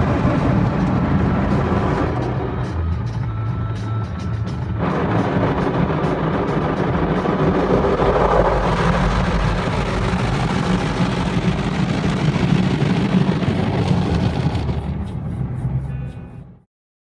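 Steady rushing of an automatic car wash heard from inside the car, water spraying and streaming over the windows, mixed with music with a steady low bass line.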